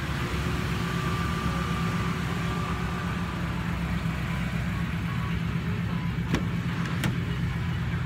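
A vehicle engine idling steadily close by. Two sharp clicks come near the end, as a car door latch is worked and the door opened.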